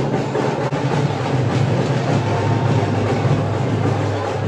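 Loud, continuous din of a large festival crowd pressing around a carried thottela, a dense, even clatter with no clear voices.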